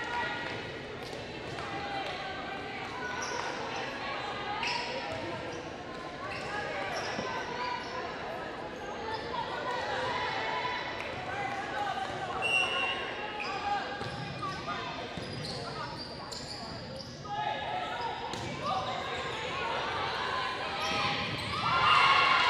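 Volleyball game sound echoing in a large gym: several players' voices calling out and chatting, with ball hits and footfalls on the hardwood court during a rally. The sound grows louder right at the end.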